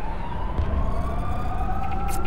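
Film sound design: a synthesized tone gliding slowly upward in pitch over a deep low rumble that swells about half a second in.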